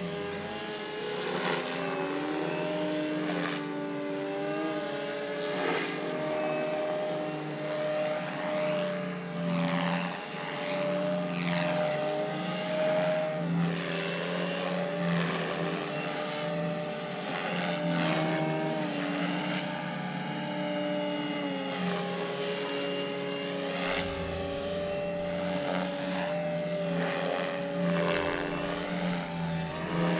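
Flex Cap 232 RC aerobatic model plane flying, its motor and propeller giving a steady buzz whose pitch rises and falls with the throttle.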